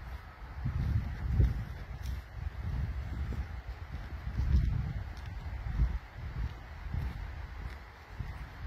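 Wind buffeting a handheld camera's microphone, heard as irregular low rumbles that swell and fade every half second or so.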